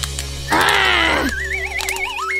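Background music with a cartoon-style sound effect for squeezing an empty plastic bottle. About half a second in comes a short squeal that falls in pitch, then a warbling tone that climbs in pitch toward the end.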